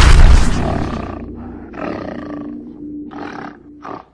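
A loud animal-roar sound effect in a logo sting with music, strongest at the start and fading over the first second. It is followed by three shorter bursts over a held tone and cuts off suddenly at the end.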